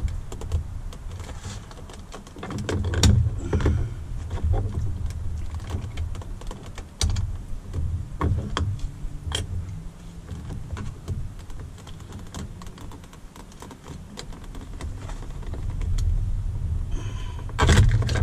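Small screwdriver tips scraping and clicking against a plastic trim cap as it is pried out of a truck door-handle recess. Scattered light clicks and taps, with a louder click cluster near the end as the cap comes free.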